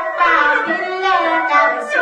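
A voice singing Tai Lue khap, a traditional sung verse, in a long melodic line whose pitch bends and wavers, with instrumental accompaniment.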